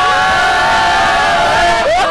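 A group of children and a young man screaming together in one long, loud held yell, which breaks off near the end.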